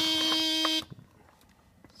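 The 1993 Mercedes-Benz 300E's warning buzzer sounds one steady tone, then cuts off suddenly under a second in, leaving only a few faint clicks.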